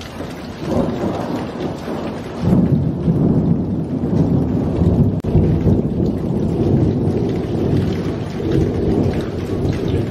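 A loud, low rumbling noise with a rushing hiss over it, surging about two and a half seconds in and easing slightly near the end.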